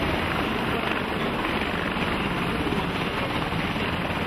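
Military helicopter hovering overhead: steady rotor chop over a constant rushing noise.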